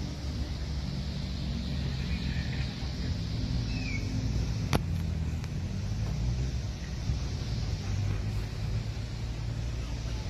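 Outdoor ambience with a steady low rumble, a sharp click about five seconds in, and a faint short chirp just before it.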